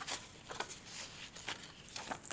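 Paper rustling and scraping as a paper tag is handled, a series of faint soft rustles.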